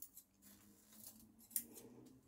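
Scissors snipping fresh nettle stems, a few faint short snips, most of them in the second half.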